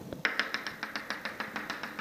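Chalk tapping on a chalkboard in a quick even series, about eight sharp taps a second, as a dotted line is dabbed down the board.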